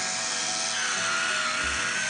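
Battery-powered electric wine bottle opener's small motor whirring steadily in reverse, backing the cork off its spiral to eject it, with background music under it.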